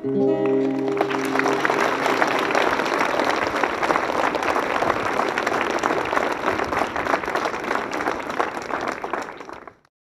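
A children's choir and acoustic guitar hold the last chord of a song. An audience's clapping breaks in almost at once and goes on for several seconds, fading away just before the end.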